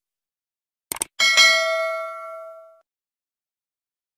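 Subscribe-button animation sound effects: a quick double mouse click about a second in, then a notification bell ding that rings out over about a second and a half.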